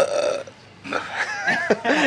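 A man burps loudly and briefly, then after a short pause makes some wordless vocal sounds.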